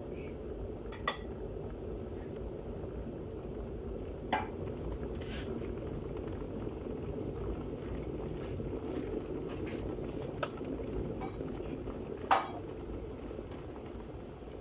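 A metal turner clinking and knocking against a frying pan while an omelet cooks: a handful of short, sharp knocks spread out, the loudest near the end, over a steady low hum.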